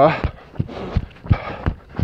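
A jogger's running footsteps, about three a second, with heavy breathing between them.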